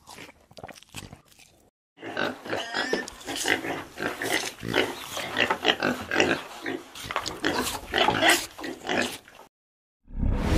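Pigs grunting and oinking in quick short calls, sparse at first, then busy from about two seconds in, stopping shortly before the end.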